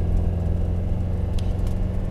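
Steady low engine and drivetrain rumble of a Land Rover Defender 90 soft top being driven.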